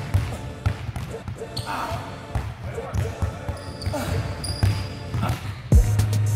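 Basketballs being dribbled, repeated bounces throughout, with a person sighing about two seconds in.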